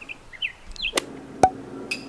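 Faint birdsong, a few short chirps, in the first second. Then two sharp clicks about half a second apart.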